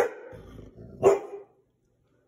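Golden retriever giving two alert barks about a second apart, the second one louder, at deer seen out of the window.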